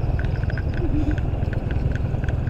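Small motorbike engine running steadily under way, with a quick regular ticking rattle as it rides over a gravel road.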